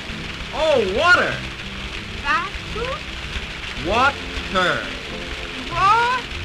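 Steady splashing of falling water, heard under a music score and gliding voices.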